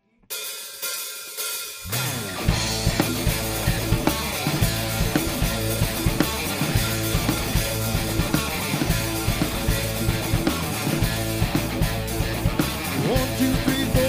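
Live rock band starting a song: after a moment's silence, a softer lead-in, then about two seconds in the full band comes in, led by a drum kit playing a steady beat with snare, kick drum and cymbals.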